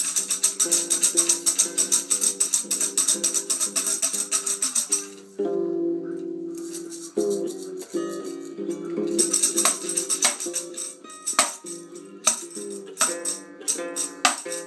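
Toy tambourine shaken rapidly in a fast run of jingles, over a thin electronic melody from a small toy speaker. The shaking stops about five seconds in and returns from about nine seconds in as shorter shakes and single jingles.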